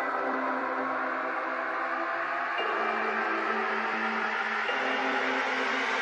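Beatless intro of an electronic trap/techno remix, with no vocals: sustained synth chords that change about every two seconds, over a hiss that slowly swells in the upper range.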